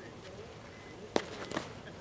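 A single sharp crack of a softball impact about a second in, followed by a lighter knock half a second later, over faint distant voices.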